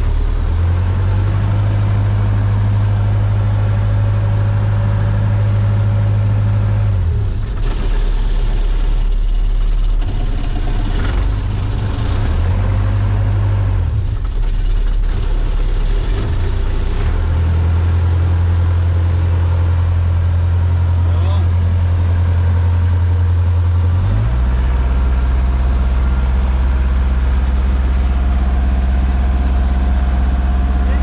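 Small wooden fishing boat's engine running under way, a steady low hum whose pitch steps down and up several times as the throttle is changed.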